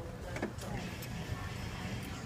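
Indoor arena ambience: a steady low rumble with indistinct background voices and two faint knocks, one about half a second in and one about a second in.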